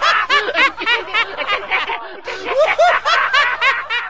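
High-pitched giggling laugh sound effect, rapid rising-and-falling 'hee-hee' bursts with a short break about two seconds in.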